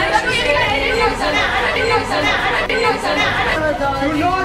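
Several young people's voices talking and shouting over one another at once.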